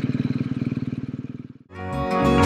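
BMW R1250GS boxer-twin motorcycle engine running steadily with an even, quick pulse, fading out about one and a half seconds in. Slide-guitar music starts near the end.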